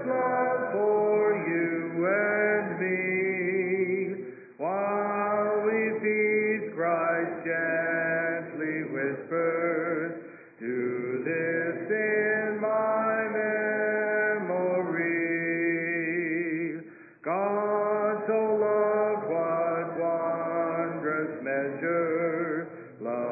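Church congregation singing a hymn a cappella, with no instruments, in sustained phrases broken by brief pauses for breath about every six seconds.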